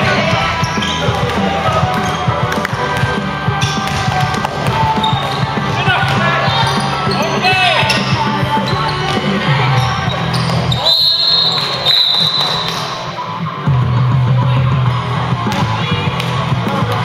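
Basketball bouncing on a hardwood gym floor, with sneakers squeaking and players' voices calling out.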